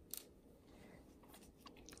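Near silence, with one faint click just after the start and a few softer ticks near the end.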